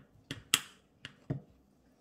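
Serrated knife sawing through a fruit cake: about five short, crisp scrapes and clicks as the blade cuts through the crust, the loudest about half a second in.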